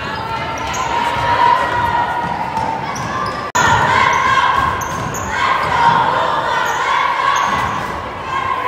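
A basketball being dribbled on a hardwood gym floor amid players' footsteps and voices, echoing in a large gym. The sound breaks off abruptly about three and a half seconds in and resumes at once.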